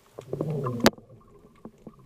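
Underwater sound heard through an action camera's housing on a dive: a low, wavering rumble lasting about half a second, cut off by one sharp click just before the one-second mark, then faint scattered ticks.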